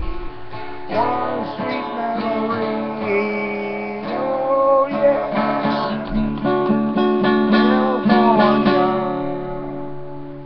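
Acoustic guitar strumming the closing bars of the song, with some wavering held notes over it, fading out near the end.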